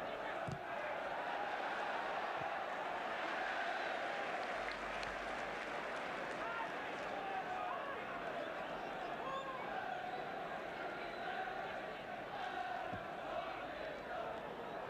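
Steady noise of a large football crowd on the terraces, many voices merging into one constant sound, with occasional single shouts rising out of it.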